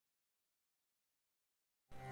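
Silence, with music just starting at the very end.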